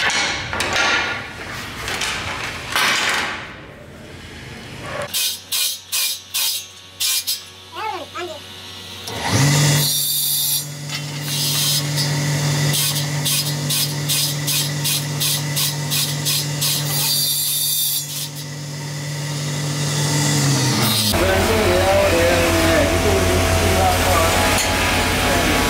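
Small bench circular saw's motor starting up, running steadily as antler is cut, then spinning down with falling pitch. Before it, clattering and clicks as antlers are handled; after it, a different low steady machine hum.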